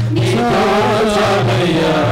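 A Telugu Christian devotional song: a sung melody with wavering, ornamented notes over low accompaniment notes that are held and step between pitches.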